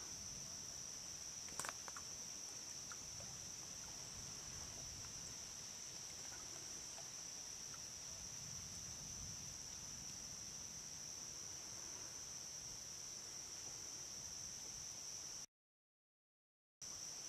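Crickets chirping in a steady, high-pitched night chorus, faint and unbroken, with a single small click about a second and a half in. The sound cuts out completely for about a second near the end.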